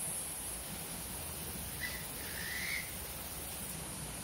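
A bird calling twice about two seconds in: a short whistled note, then a longer one that rises slightly, over a steady background hiss.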